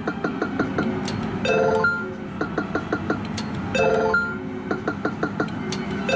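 Electronic video poker machine game music: a short phrase of bleeping notes that repeats about every two and a half seconds.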